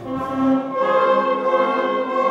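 Children's school wind band of clarinets and saxophones playing held chords, the harmony changing about a second in.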